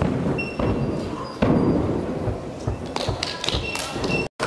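Thuds of a gymnast's hands and feet striking the gymnastics floor during a tumbling pass. The heaviest thump, a landing, comes about a second and a half in, and a few lighter knocks follow near the end.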